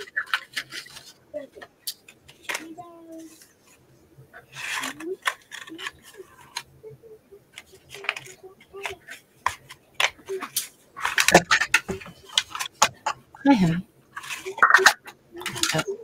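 Scattered clicks and clatter of paper-craft tools handled on a desk, with a circle paper punch being pressed through paper; it doesn't cut very well.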